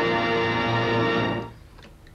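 End-title film music holding a sustained closing chord, which stops about one and a half seconds in.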